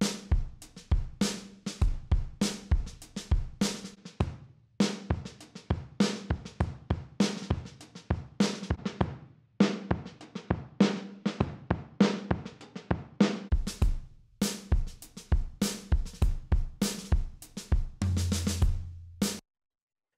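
A soloed drum-kit track (kick, snare and hi-hats in a steady groove) played through tape-machine emulation presets, its colour changing from one drum-bus tape setting to the next. Near the end a low sustained tone sounds under the hits before the playback cuts off suddenly.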